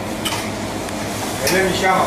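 Steady sizzle of frying with light clicks and clatter of utensils against metal trays and dishes at a falafel counter; a man's voice starts near the end.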